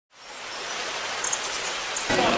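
A steady hiss of noise fades in from silence over about half a second and then holds. It is the sound effect under a logo intro card.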